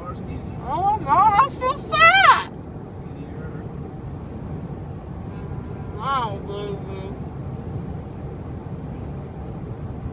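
Steady low rumble of road noise inside a moving car's cabin. Over it come high-pitched vocal sounds from a person, loudest from about one to two and a half seconds in, and a shorter one around six seconds in.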